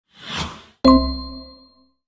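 Intro sound effect: a short whoosh, then a sudden bright metallic ding with a low boom beneath it, ringing out over about a second.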